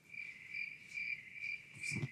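Cricket chirping in a steady, evenly pulsing high trill of about two to three chirps a second, the stock 'crickets' sound effect marking an awkward silence.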